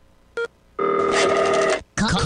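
Phone ringtone: a brief two-tone chirp just under half a second in, then one steady electronic ring lasting about a second that cuts off sharply.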